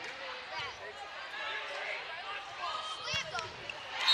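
Indoor volleyball rally on a hardwood court: short high-pitched sneaker squeaks, a burst of them about three seconds in, and a few sharp slaps of the ball. Behind them is the murmur of a crowd in a gym.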